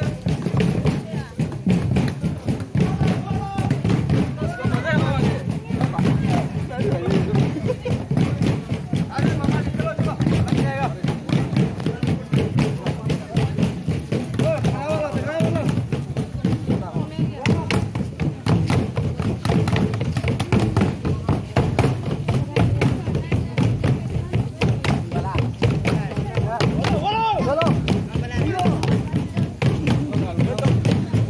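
Carried double-headed wooden drums beaten over and over in a procession, with voices singing or chanting over the drumming and rising loudest a few times.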